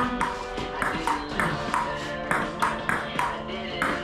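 Table-tennis rally: quick clicks of the ball striking paddles and table, about three a second, over background music.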